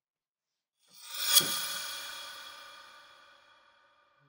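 Horror-film sound-effect sting: a short swell into a single metallic clang, which rings on in several tones and fades away slowly.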